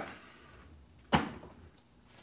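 A wooden bo staff knocks once, sharply, about a second in, as its side-to-side spin is stopped, with a short ringing after the hit.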